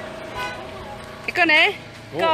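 A person's voice calls out loudly and briefly near the end, over a faint steady held tone that runs through the first part and stops about a second and a half in.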